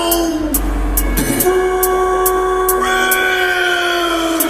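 Opening of a riddim dubstep track: a held synth chord whose notes bend gently downward, over a steady ticking hi-hat.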